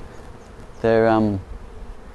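Honeybees buzzing around an open hive box and a frame of bees held out of it: a steady hum.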